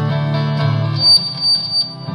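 Live rock band playing an instrumental passage: electric guitars over a bass guitar holding low notes. About a second in the bass drops away and a high piercing tone comes in three short swells.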